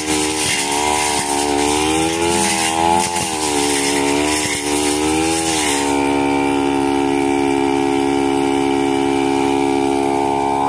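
Backpack brush cutter engine running at high speed, its pitch sagging and recovering again and again as the blade bites into thick grass. About six seconds in the cutting noise stops and the engine runs on at a steady pitch.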